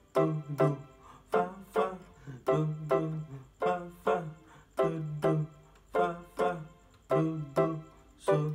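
Piano keyboard played with both hands in C major: short struck chords in a steady, bouncy rhythm, about two a second, over a repeating bass-note pattern in the left hand.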